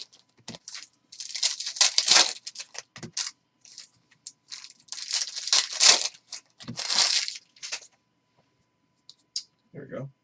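A foil trading-card pack being torn open and crinkled in the hands: several crackly bursts of tearing and crinkling wrapper, stopping about eight seconds in.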